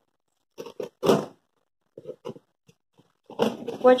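Short scraping and tearing sounds of a small hand tool being dragged along the taped seam of a cardboard shipping box to slit it open, in three brief bursts. A voice starts near the end.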